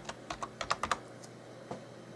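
Computer keyboard typing: a quick run of about eight keystrokes in the first second, then a single keystroke a little past halfway.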